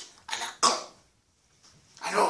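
A man coughs twice in quick succession, two short harsh coughs within the first second.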